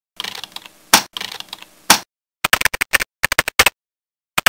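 Computer keyboard typing: quick runs of key clicks, with two louder single strokes about a second apart in the first half, then short clusters of rapid clicks.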